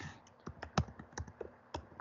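Typing on a computer keyboard: a quick, irregular run of about a dozen keystroke clicks as a search word is entered.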